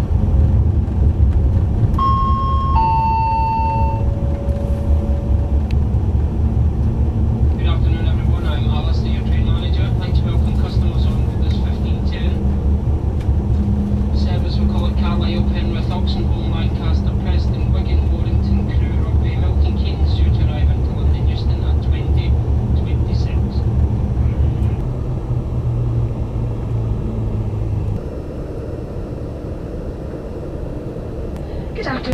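Interior running noise of a Class 390 Pendolino electric train: a steady low hum and rumble of the moving carriage that eases near the end. A two-note falling chime sounds about two seconds in, and indistinct voices run from about eight to twenty-four seconds.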